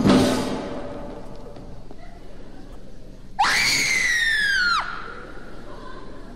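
An orchestral chord dying away, then a single high-pitched scream about three and a half seconds in. The scream rises sharply, slides slowly down over about a second and a half, and cuts off.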